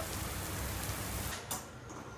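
Heavy rain pouring down, a steady hiss, which stops abruptly about a second and a half in, leaving a much quieter background with a single click.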